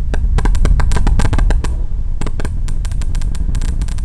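Falcon 9 rocket's first-stage engines heard from afar: a deep rumble with rapid, irregular crackling.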